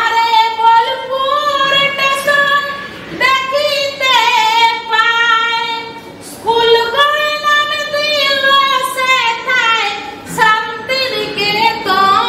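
A woman singing a Bengali patua scroll song (pater gaan) unaccompanied, in a high voice with long held notes and sliding ornaments. The song comes in about four phrases, with short breaks about 3, 6 and 10 seconds in.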